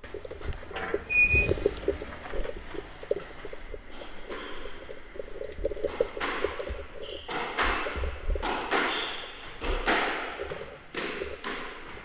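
A squash ball being struck with a racket and smacking off the court walls: a run of sharp, echoing hits about every half-second to second from around four seconds in. A short high ping comes near the start.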